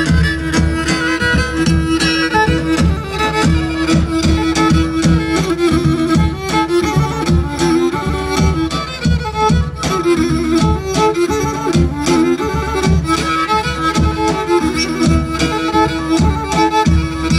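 Amplified Pontic Greek folk dance music: a bowed string instrument plays a fast ornamented melody over a held drone note and a steady drum beat.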